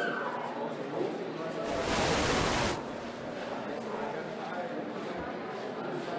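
Indistinct talking and crowd chatter in a large hall, with a loud hiss lasting about a second about two seconds in.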